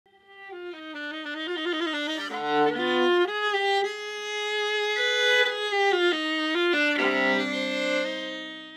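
Solo viola played with the bow: a slow melody of held notes with vibrato, swelling in over the first second. Low notes join the melody as double stops around the middle, and near the end it settles on a held low chord that keeps ringing.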